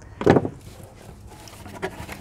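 Cardboard shipping box being opened by hand: a short loud scrape of the flaps about a quarter second in, then faint rustling and a couple of light taps as the flaps are folded back.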